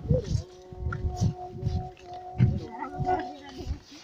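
Voices singing a slow chant with long held notes, over low irregular thumps.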